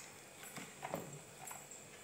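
A few faint, scattered knocks and clicks as a plastic spin mop is handled in its bucket.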